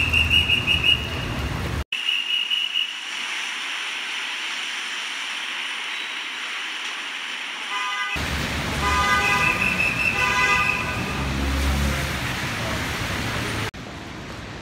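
Heavy rain hissing on a wet city street with traffic, and car horns honking in steady held tones near the start and again about two-thirds of the way through. The sound breaks off abruptly a few times where shots change.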